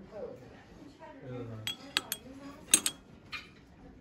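A metal ladle clinking against a glass bowl as it is set down into it: several sharp clinks in the second half, the loudest coming as a quick pair.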